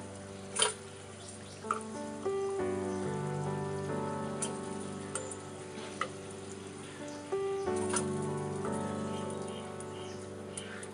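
Background music with held notes over the faint sizzle of kachoris deep-frying in oil, with a few sharp clicks as a slotted steel spoon scoops them out of the pan.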